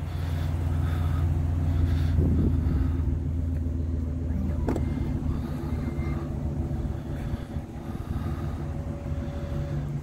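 2021 GMC Yukon XL's engine idling steadily after a remote start, a low hum heard from close behind the vehicle. A single click sounds about halfway through.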